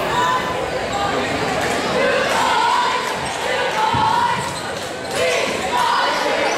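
A basketball bouncing on a hardwood gym floor among players' and spectators' voices calling out, with a single thump about four seconds in.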